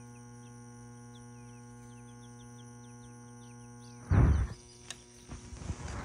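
Outdoor background of a steady low hum and insects droning high above it, with faint repeated chirps. A short loud rustle comes about four seconds in, followed by a few faint knocks.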